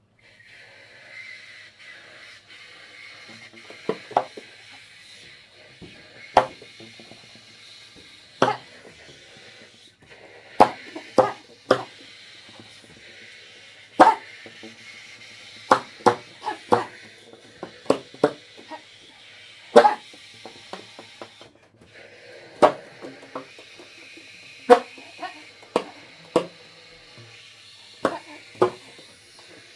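Baritone and tenor saxophones improvising with extended techniques: a steady airy hiss with a short break a little past two thirds of the way through, under irregular sharp percussive pops.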